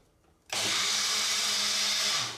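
Small personal blender running, its upturned cup pressed down onto the motor base, blending soaked oats and water into a smooth oat cream. The motor starts suddenly about half a second in with a steady whirr.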